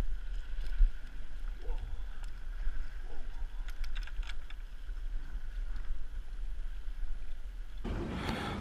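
Steady low rumble of wind and sea on the camera microphone, with scattered small knocks and clicks as a freshly landed fish and the fishing line are handled on the rocks.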